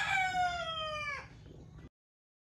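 A rooster crowing: one long call that holds, then falls in pitch and ends about a second in, over a low steady rumble. All sound cuts off suddenly near the end.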